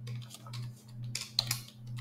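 Computer keyboard typing: a few keystrokes, most of them bunched together past the middle, over a low hum that swells about twice a second.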